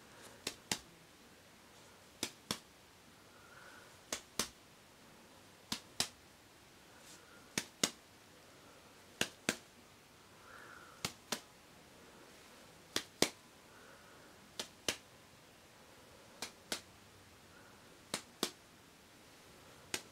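Finger taps in pairs, a sharp double tap about every two seconds, eleven pairs in all: the tapping of chest percussion in a role-played lung exam.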